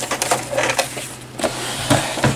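Rustling and clicking of fabric and laminated PUL being handled and pulled out from the sewing machine once stitching has stopped, with a thump near the end.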